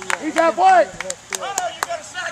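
Excited shouting from several voices at a youth baseball game, pitch rising and falling, with about six short sharp claps scattered through it.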